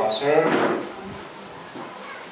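A man speaking into a microphone, his voice cutting off within the first second, followed by a short clatter with a few faint clicks.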